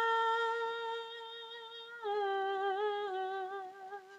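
A woman singing unaccompanied, holding one long note for about two seconds, then stepping down to a slightly lower note held with a light waver until it fades near the end.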